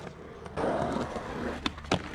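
Skateboard on concrete: a loud, rough rush lasting about a second, then two sharp clacks of the board near the end.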